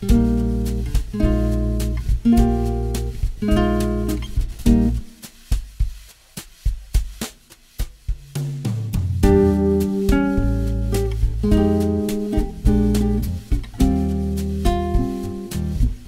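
Bossa nova backing track at 105 bpm: guitar chords with drums. Near the middle the chords and low notes stop for a few seconds while only light drum hits keep time (a no-chord break), then the full groove comes back in.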